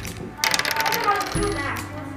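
Small dice tossed onto a wooden desk, clattering and clicking as they bounce and settle, loudest about half a second in. Background music plays underneath.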